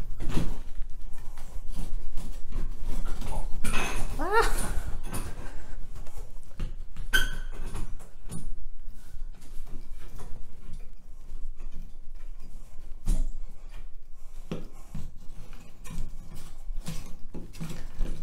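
Shower curtain tension rod being twisted and shifted against the shower walls: scattered clicks, knocks and rubs, with a short rising squeak about four seconds in.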